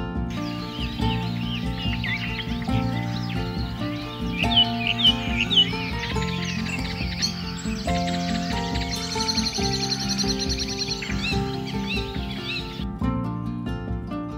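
Background music with many bird chirps and calls layered over it, stopping about a second before the end. Three sharp chirps come around five seconds in, and a fast, high trill around ten seconds in.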